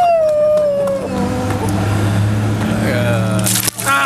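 One person's long, slowly falling cry of anticipation, then, about three and a half seconds in, a bucket of ice water splashing down over a seated man.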